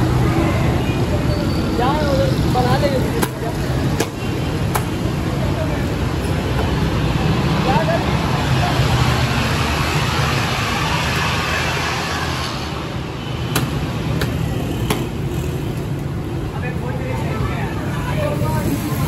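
Bare-foot taekwondo kicks slapping a handheld paddle kick pad, sharp single smacks coming in quick runs of about three. Underneath is a steady background of noise and voices.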